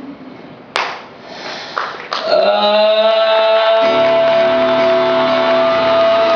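Live concert music in a large hall: a male singer with a band. A sharp click comes about a second in, the band comes in with a sustained chord at about two seconds, and a deep bass layer joins at about four seconds.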